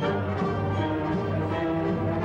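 Symphony orchestra and large choir performing a Requiem live, with full sustained chords.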